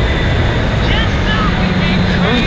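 Heavy wind noise on a handlebar-mounted microphone of a motorbike at about 64 mph, over the bike's engine running at speed with a steady low hum.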